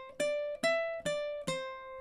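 Ukulele played fingerstyle, single notes plucked one at a time on the A string in a short run that climbs to the seventh fret and steps back down to the third. There are four plucks about half a second apart, and the last note rings on.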